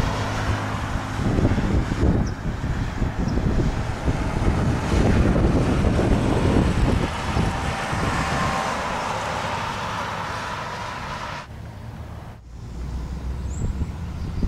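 Outdoor road traffic: passing vehicles and tyre noise, with wind on the microphone. The sound swells over the first seconds, slowly fades, and changes abruptly near the end.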